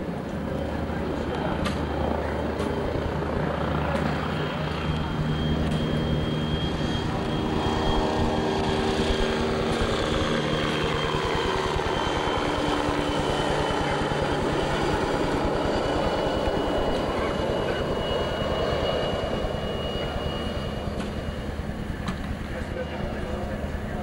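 A steady engine drone with a few held tones, growing louder after about five seconds and easing off near the end, over faint background voices.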